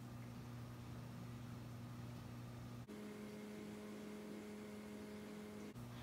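A low, steady electrical hum with no other sound. Its pitch shifts abruptly about halfway through and switches back just before the end.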